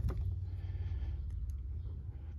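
Small metal clicks of coax F-connectors being handled as a remote test lead is pulled off the cable: one sharp click at the start and a faint tick about a second and a half in, over a low steady hum.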